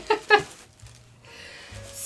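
A woman laughing briefly in a few short bursts, then faint background music.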